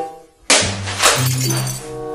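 Background music with held low bass notes, cut across about half a second in by a sudden loud crash of something breaking, which fades over the next second.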